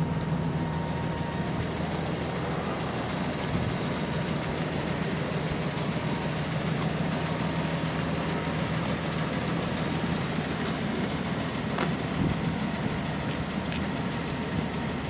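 The 3.9-litre V6 gas engine of a 2001 Dodge Ram 1500 pickup, idling steadily.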